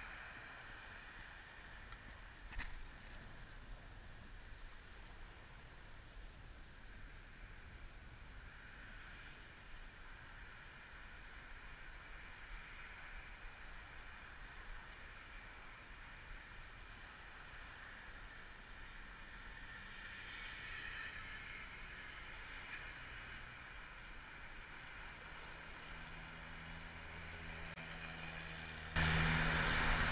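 Faint, steady outdoor background rumble and hiss, with one sharp click about two and a half seconds in. About a second before the end, a louder rumble with a low, steady hum starts.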